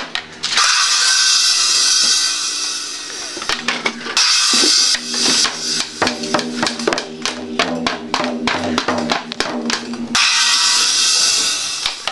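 A child's toy drum set hit irregularly with sticks: scattered taps on the drum, with the cymbal crashed three times (about half a second in, at about three and a half seconds and at about ten seconds), each crash ringing out for a couple of seconds.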